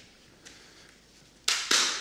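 Near-quiet room tone, then a short hissing burst about one and a half seconds in.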